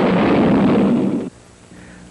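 Cartoon explosion sound effect: one loud boom lasting just over a second that cuts off abruptly. It is a gun blowing up because its barrel is plugged and the bullet has no way out.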